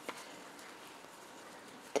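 Faint handling sounds of crochet: a metal hook and yarn being worked by hand, with one light click just after the start over quiet room tone.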